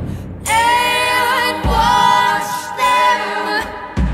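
Female voices singing long held notes in close harmony, in a folk-rock song recording, with a deep drum hit about midway.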